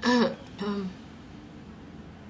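A woman clearing her throat: two short voiced sounds about half a second apart, the first the louder.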